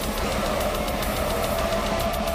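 Blackened death metal band playing live at full volume: distorted electric guitars, bass guitar and drums in a steady dense wall of sound, with rapid drum hits.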